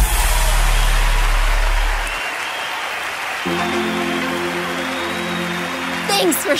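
Crowd cheering and applause over the end of a pop song, whose held low bass note fades out about two seconds in. A soft sustained chord comes in a little past halfway and holds.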